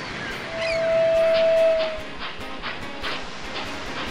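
Soft background music with high chirps, and a single steady whistle tone that starts about half a second in and holds for about a second and a half, dipping slightly in pitch as it ends.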